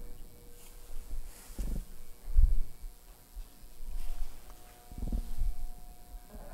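Dull low thuds and knocks of a man walking about and handling a large cutout prop, the loudest about two and a half seconds in and others around one and a half and five seconds in, over a faint steady hum.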